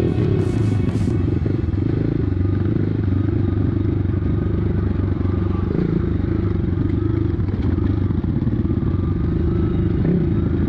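Dirt bike engine running at a steady, even throttle, heard close up from the bike itself, with rattling from the bike jolting over a rutted dirt track.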